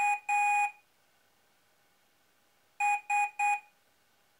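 Piezo buzzers on microcontroller boards beeping Morse code with a steady, single-pitched tone. There is a short beep and then a longer one, a pause of about two seconds, then three short beeps. These are the controllers morsing addresses and commands to their neighbours in the chain.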